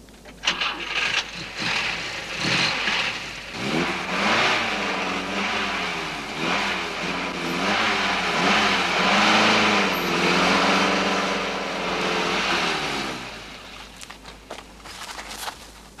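Car engine revving hard under load while towing a car stuck in mud, its pitch rising and falling for about ten seconds over a hiss, then dying away. A few knocks come before the engine builds up.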